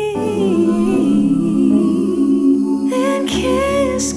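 A voice humming a slow melody over soft backing music in a children's bedtime song.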